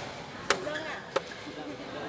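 Two sharp hits of a badminton racket striking the shuttlecock, less than a second apart, as in a fast exchange in a doubles rally.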